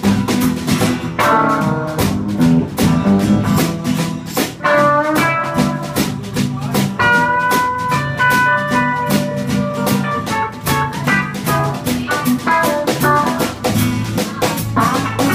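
Live blues band playing an instrumental passage: an electric guitar plays lead lines of held notes over strummed acoustic guitar and a drum kit keeping a steady beat. The lead notes stand out most in the middle of the passage.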